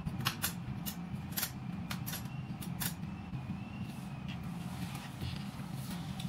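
Metal claw hooks of a body-shop dent puller clinking as they are handled and set on the puller bar: several sharp, separate clicks in the first four seconds or so, over a steady low hum.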